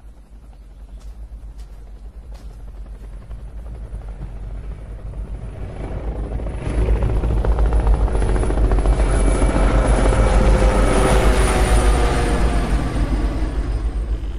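Military helicopter approaching and passing overhead. The rotor beat grows steadily louder over the first half, is loudest in the middle, and eases slightly near the end.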